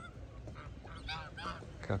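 Waterfowl calling: a quick run of four or five short calls about a second in.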